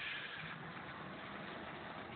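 A minivan driving slowly past at low speed, its engine a faint, steady low hum that firms up about half a second in.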